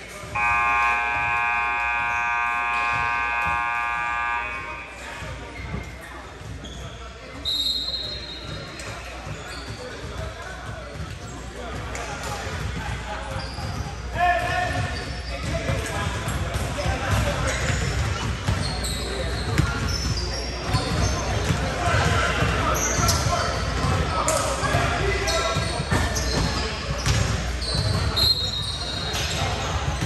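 A gym scoreboard buzzer sounds once, a steady horn of about four seconds, just after the start. Then comes a basketball bouncing on a hardwood court, with short sneaker squeaks and players' voices echoing in a large hall.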